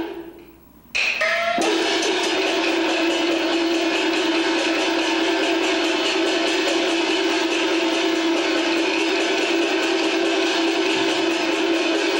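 Traditional Chinese opera band accompaniment. After a sound dies away in the first second, the band comes in loud at about one second, with a strong held melody over plucked strings and fast percussion.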